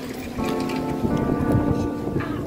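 Wind buffeting the phone's microphone in uneven gusts, with background music of sustained notes coming in about half a second in.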